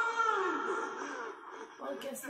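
A drawn-out wailing voice, one held high note whose pitch wavers and falls during the first second before it fades.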